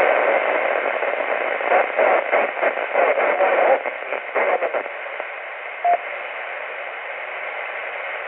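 Static hiss from a Kenwood TS-480HX transceiver's speaker while it receives a weak 10-meter FM repeater signal, fluttering for the first few seconds and then steadier and a little quieter. A short beep sounds about six seconds in.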